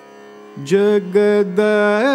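Carnatic vocal music: over a faint steady drone, a male voice enters about half a second in and holds long, steady notes with short breaks.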